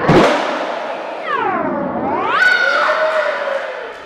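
Skateboard landing hard on concrete right at the start, then its wheels rolling away. From a little after a second in, a high-pitched shout that falls and then rises in pitch.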